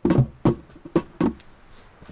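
About five short, sharp knocks at uneven intervals, three in the first half second and a pair about a second in.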